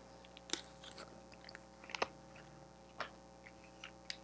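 Oracle cards being shuffled and laid down on a table: a few faint, sharp clicks and snaps, spaced about a second apart.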